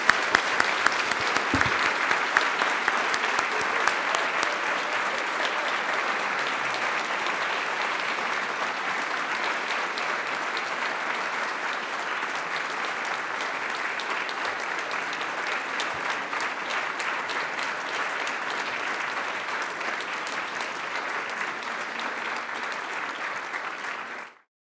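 Audience applauding steadily, with a few sharp, loud claps close to the microphone at the start.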